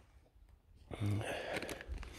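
Near silence for almost a second, then a short low voice sound and handling noise with a few clicks as a firework rocket is handled over a metal launch tube.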